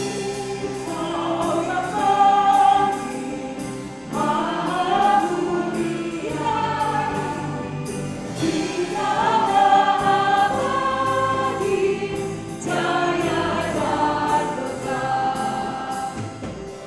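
Church ensemble playing a hymn: voices singing in harmony over instrumental accompaniment, in phrases that swell and ease every few seconds, with a light tick in the high end about twice a second.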